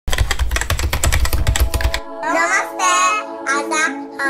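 A fast, even run of sharp clicks, about a dozen a second, for the first two seconds, then a child's voice singing over held musical chords.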